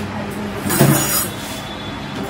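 A brief harsh scrape with a low knock about a second in, as household things are shifted during kitchen cleaning, over a steady low hum.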